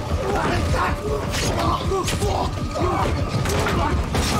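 Film sword-fight sound mix: men shouting and grunting in short bursts while sudden sword strikes and swishes cut through, over a steady low rumble.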